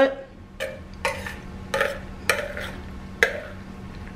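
A metal spoon stirring cooked elbow macaroni in a glass bowl, scraping and clinking against the glass about five times, mixing butter through the hot noodles.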